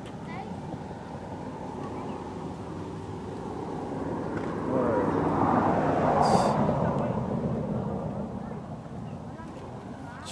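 A passing engine: a steady drone that grows louder, is loudest about six seconds in, then fades away.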